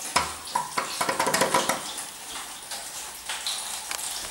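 Quick clicks and metallic clatter from an old two-speed traction lift's landing door and lock mechanism as the car reaches the floor, densest in the first two seconds over a short low hum, then settling to fainter rattling.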